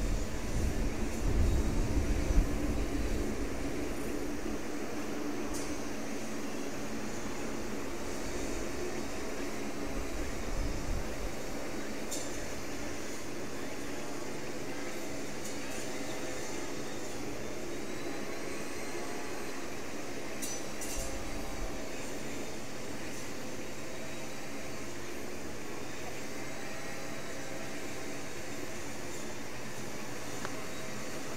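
Steady distant hum from the parked C-130J Super Hercules, with faint steady tones in it. A low rumble fills the first three seconds.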